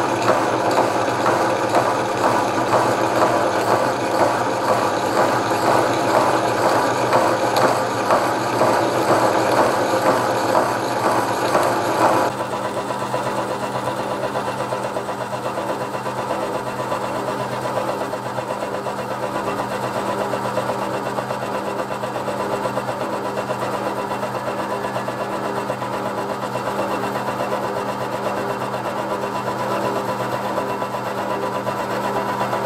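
Milling machine with a slitting saw cutting a slot into a steel sleeve: a steady machining run with a fast, even chatter of the saw teeth in the cut. It is louder for about the first twelve seconds, then drops suddenly to a quieter steady run.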